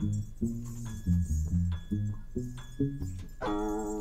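Live jazz combo playing an odd-meter piece: a Fender Precision electric bass repeats a low ostinato line under sharp percussion accents. About three and a half seconds in, a sustained pitched note with many overtones enters over the groove.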